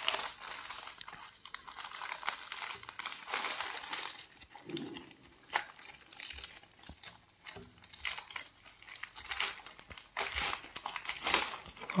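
Thin plastic courier mailer bag crinkling and rustling as it is handled, pulled at and torn open at one corner. The sound is a quiet, irregular crackling made of many small sharp crinkles.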